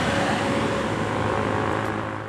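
Road traffic noise, a vehicle passing with a steady hum, fading out near the end.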